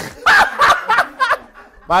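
A man laughing: a quick run of short chuckles lasting about a second.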